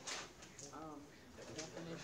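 A faint, distant voice, most likely a student answering the question from across the classroom, saying a word or two with its pitch rising and falling, once about half a second in and briefly again later.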